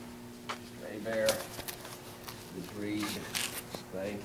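Low, indistinct talking with several sharp clicks and knocks scattered through, over a steady faint hum.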